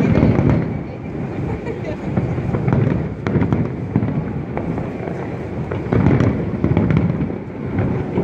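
Aerial fireworks bursting in quick succession: a continuous rumble of booms shot through with sharp crackles, swelling louder at the start and again about three and six seconds in.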